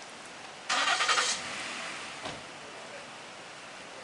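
A car engine starting: a short loud burst about a second in, then quieter running, with a brief thump a little after two seconds.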